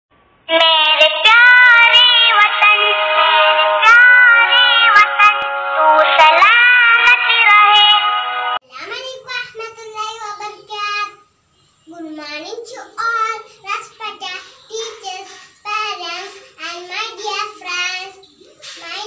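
A song with a child's singing voice over music, cutting off abruptly about eight and a half seconds in. A young girl then speaks in short phrases with brief pauses.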